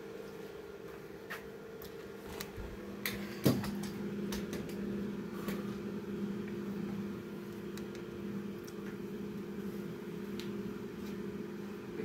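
A steady low machine hum, like a running fan or appliance, under a scatter of handling clicks and knocks as the camera and gear are moved, the loudest knock about three and a half seconds in.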